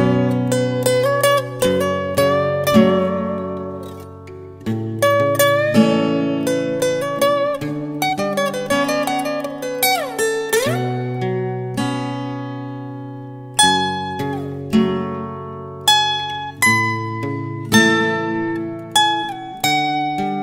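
Acoustic guitar playing an instrumental passage: plucked single notes and chords ring out over sustained bass notes. About ten seconds in, one note slides down in pitch and back up again.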